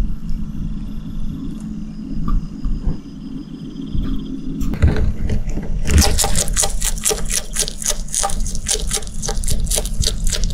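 A steady low hum, then a bearded dragon snaps at a darkling beetle about five seconds in and chews it. The last four seconds are rapid crunching of the beetle's hard shell, several crunches a second.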